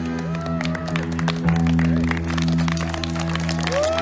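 A live rock band's electric guitar and bass let a final chord ring out through the amplifiers, the song's ending, while the audience claps and lets out a few whoops.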